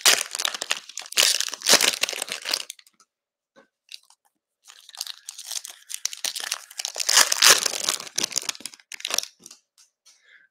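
A trading card pack's wrapper being crinkled and torn open by hand. There are two spells of crinkling and tearing with a near-quiet gap of about two seconds between them.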